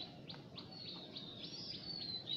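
Small birds chirping in the background: a series of short, high chirps with a thin, wavering whistled note near the middle.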